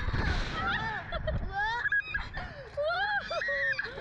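Two riders on a Slingshot reverse-bungee ride laughing and shrieking with high, swooping voices, with wind rushing over the microphone for the first second or so.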